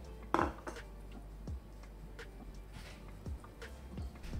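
Silicone spatula stirring minced garlic in olive oil in a stainless steel pot, with a few short knocks and scrapes against the pot, the loudest about a third of a second in. A steady low hum runs underneath.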